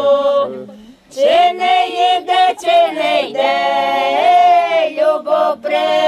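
A small group of women's voices singing a folk song unaccompanied, with sustained, sliding notes. There is a brief break for breath about a second in.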